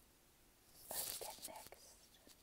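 A faint whisper about a second in, breathy and lasting under a second, in otherwise near-silent room tone.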